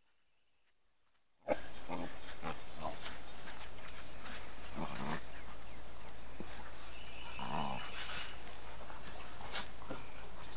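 Dogs at play, with a few short growling sounds, strongest about five and seven and a half seconds in. A steady hiss comes in suddenly about a second and a half in.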